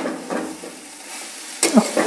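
Spatula stirring and scraping cauliflower, potato and green peas through a masala gravy in a metal kadai, over a soft sizzle of frying, with a sharper scrape about a second and a half in.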